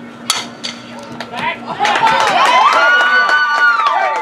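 A softball bat strikes a pitched ball with one sharp crack about a third of a second in. Then, from about two seconds in, spectators and players yell and cheer with long, high-pitched shouts.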